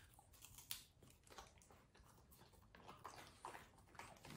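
Near silence, with faint soft crunches of a French bulldog chewing a treat, the clearest a little under a second in.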